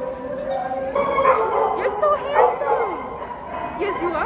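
Shelter dogs in kennels barking, yipping and whining, with bending, wavering cries that are busiest from about a second in.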